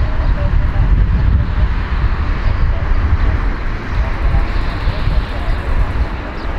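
Four-engined widebody jet airliner on its takeoff roll at takeoff thrust: a loud, steady engine noise with a deep rumble underneath, mixed with wind on the microphone.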